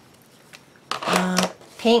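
A woman's voice speaking a word about a second in, with more speech starting near the end. Before that the first second is nearly quiet, with one faint light tick.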